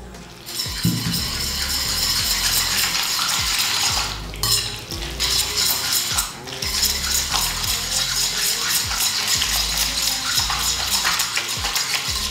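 A metal fork stirring and tossing fettuccine in a metal frying pan, scraping and clicking against the pan, as grated parmesan, butter and pasta water are worked into an emulsified sauce. The stirring pauses briefly about four and about six seconds in.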